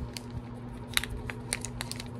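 Hands handling a small box and a watch band: light scattered clicks and crinkles over a faint steady hum.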